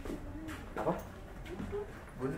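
Pigeons cooing, a few short low coos.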